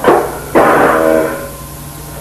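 A brief, lo-fi noisecore blast: a sharp hit at the start, then about half a second in a loud distorted chord that rings for about a second and fades. A steady mains hum runs underneath.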